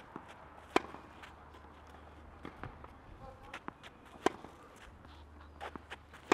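Tennis balls struck with racquets in a backhand drill: two sharp hits about three and a half seconds apart, with fainter ball bounces and hits between and after them.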